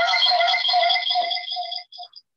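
A steady, buzzing electronic tone with a fast flutter: garbled video-call audio from a participant with audio problems. It cuts off suddenly near the end, with a couple of short blips.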